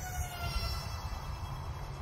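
Twin electric ducted fans of an E-flite UMX A-10 radio-controlled jet whining high overhead, a thin whine that falls slowly in pitch, with wind rumbling on the microphone.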